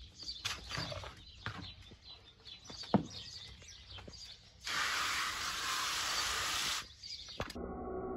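Small birds chirping over scrapes of a hand tool working grout in a plastic bucket, with one sharp knock about three seconds in. Near the end comes a burst of steady hiss lasting about two seconds, which stops abruptly, and then a steady hum.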